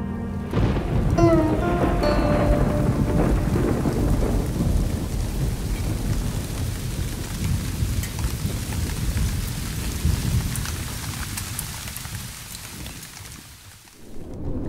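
Heavy rain pouring down with a deep rumble of thunder, fading away toward the end.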